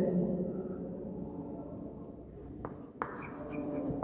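Chalk writing on a blackboard: two sharp taps of the chalk on the board about two and a half and three seconds in, then short scratchy strokes.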